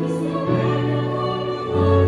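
A church choir singing a worship song, with a solo voice at the microphone and instrumental accompaniment. Long held chords change about once a second.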